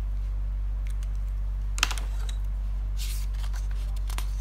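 Paper sheets being handled on a desk: a sharp tap about two seconds in, then a brief rustle of paper near the end, over a steady low hum.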